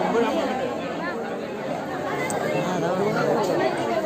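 Many people talking at once: crowd chatter, no one voice standing out.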